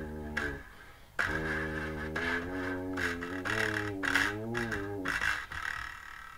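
Improvised playing on a homemade mouth-blown instrument whose metal vacuum-cleaner tube serves as resonator: buzzy, wavering notes over a low drone. There is a short break about a second in, and the playing trails off near the end.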